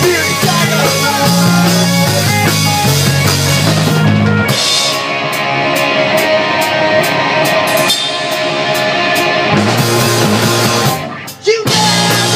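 Rock band playing live, drum kit and guitars, loud. The low notes drop out for a sparser, drum-led passage in the middle, the full band comes back, and there is a brief stop just before the end before it starts up again.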